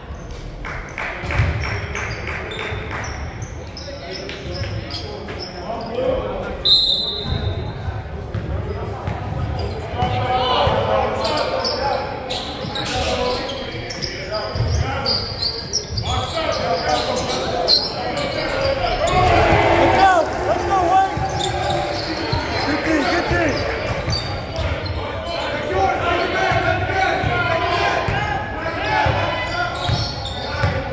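Basketball bouncing on a hardwood gym floor during play, with players and spectators calling out and the sound echoing round the large gym. A brief high whistle sounds about seven seconds in.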